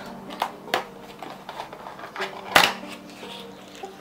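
Cardboard medicine box being handled and opened: a string of short clicks and snaps of card, the loudest about two and a half seconds in.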